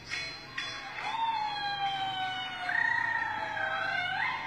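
Young girl singing a Vietnamese folk song, holding one long note from about a second in that slowly sinks in pitch, then steps up near the end. Two short struck notes sound in the first second.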